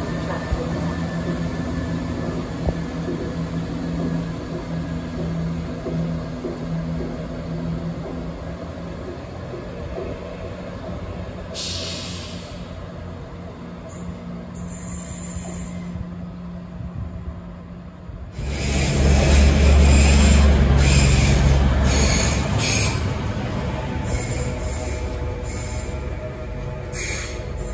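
CrossCountry Class 170 Turbostar diesel unit's engines running with a steady low hum for the first several seconds. About eighteen seconds in, a CrossCountry Class 220 Voyager diesel-electric train passes through at speed with a sudden loud rush and rumble that lasts a few seconds and then eases off.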